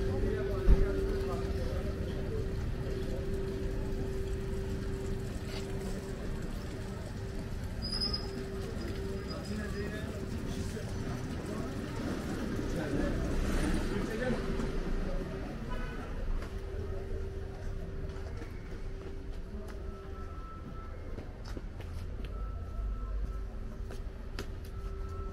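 Outdoor street ambience: people's voices around, a steady low humming tone that drops out briefly now and then, and a single sharp knock about a second in.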